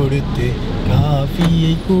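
People talking inside a moving car's cabin over a steady low rumble of engine and road noise.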